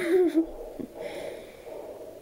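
A person's short low voiced sound right at the start, then faint breathy sounds.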